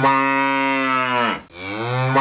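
A cow mooing: one long moo, steady in pitch, that drops away as it ends about a second and a half in, then a second moo begins.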